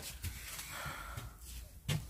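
A quiet pause with a faint breathy exhale from a person about midway, and one short click just before the end.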